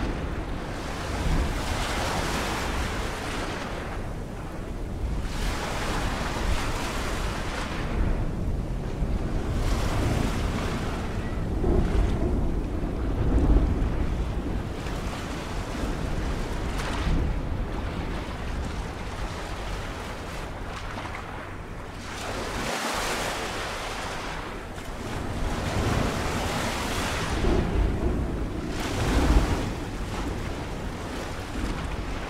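Ocean waves and wind: a continuous rush of surf over a deep rumble, swelling into a louder wash every three to four seconds and ebbing between swells.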